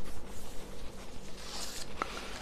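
Loose sheets of paper rustling as they are handled and a page is turned over, loudest near the end.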